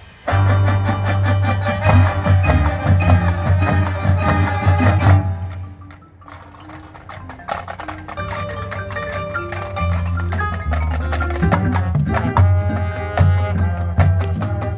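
A high school marching band playing live in its field show: winds over drums and front-ensemble percussion. A loud passage cuts off about five seconds in, and the music builds back up over the following seconds.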